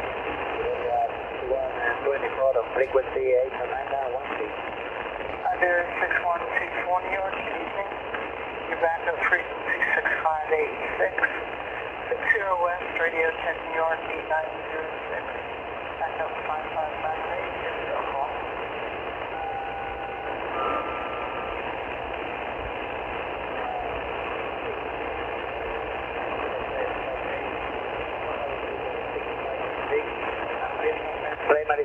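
Shortwave upper-sideband aeronautical voice traffic on 8918 kHz (MWARA Caribbean-B), heard through an Icom IC-R30 receiver. Faint, hard-to-follow voices come through static for about the first fifteen seconds, then a few short steady tones come around twenty seconds in, and after that only static hiss.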